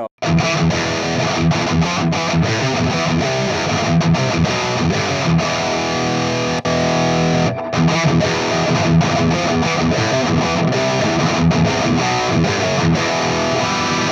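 High-gain distorted electric guitar riffing through a Peavey 5150 tube amp head, close-miked on a Bogner cabinet's V30 speaker. It plays continuously, with a brief break a little past halfway.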